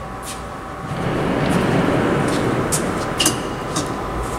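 A vehicle passing: a rumble that swells about a second in and fades near the end, with a few light clicks, over a steady hum.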